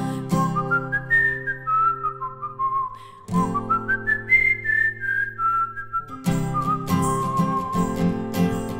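A woman whistling the song's melody over an acoustic guitar, the whistle a single pure tone stepping up and down with a brief break about three seconds in. The guitar rings softly under the first part, then strumming comes back in strongly about six seconds in.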